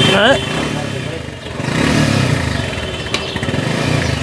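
A motorcycle engine running nearby, swelling about two seconds in and then fading, over background street and workshop noise.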